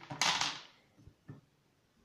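Handling of small objects on the floor: a short hiss-like rustle, then two light knocks as items are set down.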